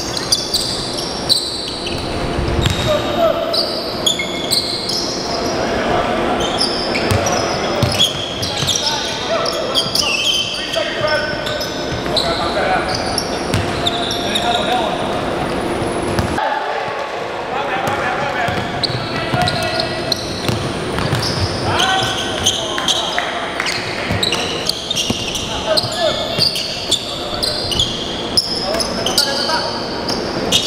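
Live pickup basketball game sound on a hardwood court in a large gym: a basketball bouncing, sneakers squeaking in short high chirps, and players calling out, all echoing in the hall.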